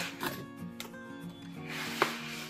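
Cardboard and foam packaging rubbing and scraping as a presentation box is opened and its soft cover sheet is pulled out, with a brief rustle just after the start and a louder swell of rubbing near the end. Background music plays underneath.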